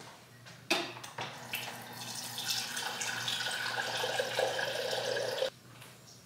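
Refrigerator door water dispenser running water into a glass mason jar, starting about a second in and cutting off suddenly near the end.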